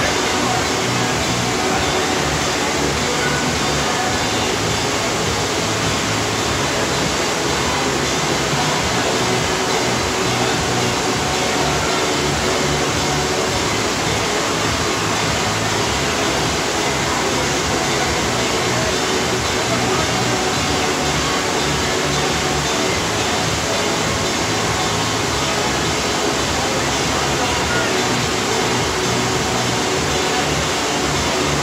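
Steady, loud rush of water from a FlowRider sheet-wave machine, pumped in a thin high-speed sheet up and over the ride surface, with voices and music faint beneath it.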